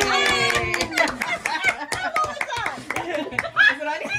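A small group cheering and clapping: a drawn-out "yay" fading out in the first half-second, then quick hand claps mixed with excited voices.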